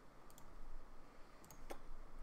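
A few faint, sharp clicks of a computer mouse in a quiet room, spread unevenly through the moment.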